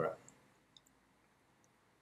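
A few faint, sharp clicks of a computer mouse, about a second apart, over near-silent room tone.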